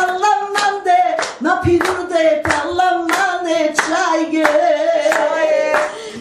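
A woman singing a cappella, holding long sliding, ornamented notes, with hands clapping a steady beat about three times a second.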